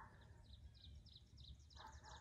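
Faint background bird song: a rapid trill of short, high, falling chirps, about seven a second, over a low outdoor rumble.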